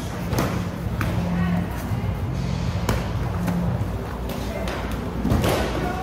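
Kicks and punches landing in kickboxing sparring: scattered thuds of shins and gloves on shin guards and bodies, four or so strikes, the loudest about five seconds in, over background gym chatter.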